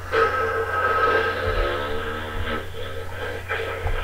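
Music or a music-like sustained sound: a held, chord-like tone that lasts about three and a half seconds and then fades.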